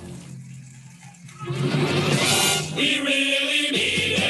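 Men's chorus singing a military running cadence, with band accompaniment. It is softer about a second in, then swells back to full sound.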